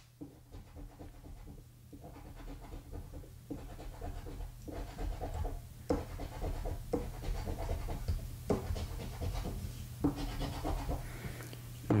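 Scratcher coin scraping the coating off a scratch-off lottery ticket in repeated short strokes, each about a second long, over a steady low hum.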